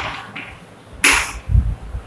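Chalk writing on a blackboard: two short scratchy strokes, one at the start and one about a second in, with a few soft knocks of the chalk against the board just after.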